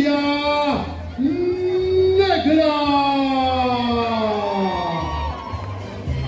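Loud music with a voice drawing out long held notes over it: a short one at the start, then one lasting about four seconds whose pitch slides slowly downward.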